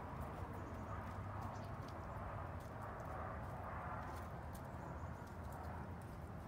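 Backyard hens clucking softly as they free-range, over a steady low outdoor rumble.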